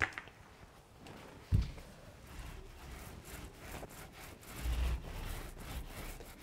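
Mohair paint roller rubbing through wet chalk paint in a tray and then over a flat door panel, a soft, repeated rolling rub. There is a low thump about one and a half seconds in.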